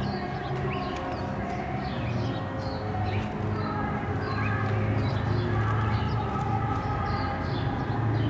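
Street background: a steady low hum, with many short high chirps of small birds scattered through it.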